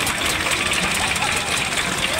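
Stationary single-cylinder diesel engine running steadily with a low, rapid thudding, under the chatter of voices.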